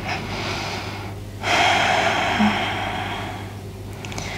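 A woman taking a slow deep breath: a faint inhale, then a long audible exhale starting about one and a half seconds in and slowly fading away.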